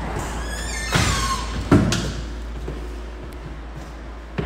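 A door squeaking as it swings, then shutting with a knock about a second in and a louder bang just under two seconds in, which rings briefly.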